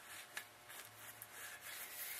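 Faint rubbing and handling sounds of a rag wiping transmission fluid off a work light, with one light click about a third of a second in and a faint low hum.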